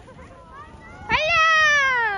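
A toddler's long, high-pitched squeal starting about a second in, rising and then slowly falling in pitch.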